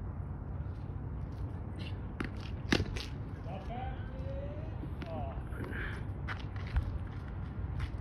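Several sharp knocks, the loudest about three seconds in, over a steady low rumble, with faint distant voices.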